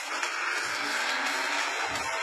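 Produced trailer sound design: a steady rushing whoosh like a car speeding past, with a low thump near the end.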